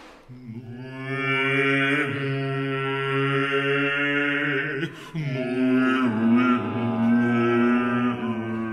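Contemporary chamber music for voice, accordion, saxophone and flute: long, steady held tones like a drone. The sound breaks off briefly about five seconds in and resumes on a changed chord.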